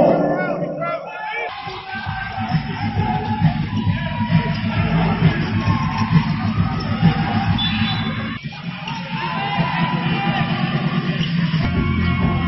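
Music with a steady beat playing in a large arena, over the chatter of a crowd.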